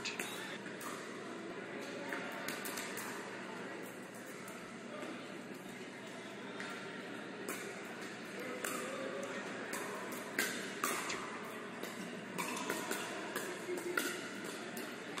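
Pickleball rally: paddles hitting the hard plastic ball, a string of sharp pops that come more often in the second half, with players' voices faint beneath them.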